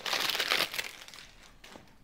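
Thick cellophane wrapping on a perfume box crinkling as it is handled by hand, rustling a lot. It dies away about a second and a half in.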